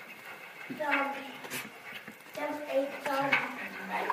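A child's voice making pitched sounds without clear words, in two stretches, with a few sharp clicks and clatter.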